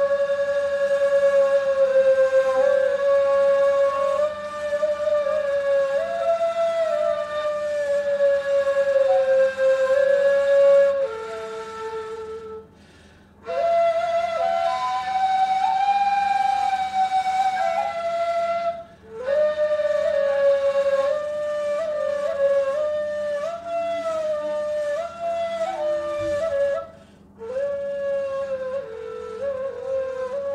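Two neys, Turkish end-blown reed flutes, playing the same slow, stepwise melody in unison. The playing comes in long phrases, with three short pauses for breath.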